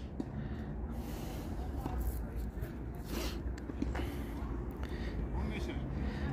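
Steady low background hum of an outdoor court with faint, distant voices; no clear ball strikes.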